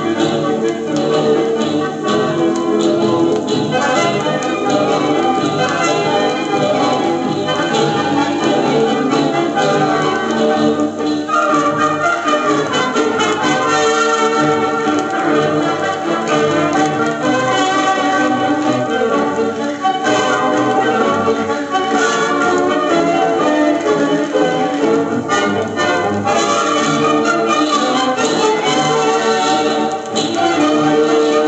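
A 1950s Soviet long-playing record of a variety concert playing on a portable suitcase record player: continuous music from the disc.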